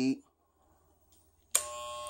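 Andis Styliner II hair trimmer switched on about a second and a half in, then running with a steady electric buzz.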